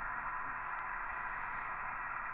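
Ham International Concorde II CB radio's receiver hissing steadily from its speaker: band noise on an empty channel, with no station coming through.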